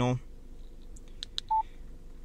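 Yaesu FTM-100DR mobile transceiver's key beep: a couple of faint button clicks, then one short, steady beep about a second and a half in, as a front-panel key is pressed to enter a menu item.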